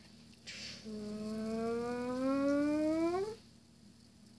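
A child's voice making a time-travel sound effect: one long hummed tone that glides slowly upward and sweeps up sharply at the end, after a short breathy hiss.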